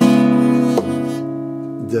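A B minor seventh chord pinched on a 1986 Greven FX steel-string acoustic guitar rings out and slowly dies away, with a sharp percussive hit on the strings a little under a second in.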